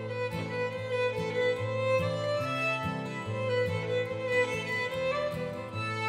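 String quartet and acoustic guitar playing an old-time fiddle tune: violins bowing the melody over cello and guitar accompaniment, with a steady beat.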